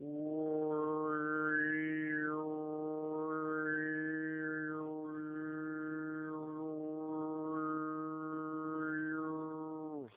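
Tuvan throat singing: a single held low drone carrying a high, shrill whistling overtone that rises and falls several times. This is sygyt with serlennedyr thrown in, where the tongue is pushed forward to force the resonance into the back of the teeth.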